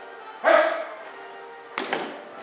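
A single short shouted drill command from the color guard, loud against the quiet hall, followed near the end by a sharp knock.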